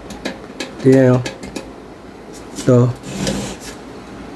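A few faint small clicks, then a short plastic clatter about three seconds in, as a rice cooker's cook switch lever and a screwdriver held against its thermostat contact are handled.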